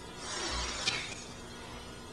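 A brief rush of noise lasting about a second, with a single sharp click near its end.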